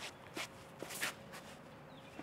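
Four quick footsteps of a disc golfer's run-up across the tee pad, the last and loudest about a second in as he plants and throws.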